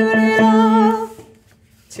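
A woman's voice singing one held note of the choir's bass line an octave up. The note stops about a second in, leaving a short pause.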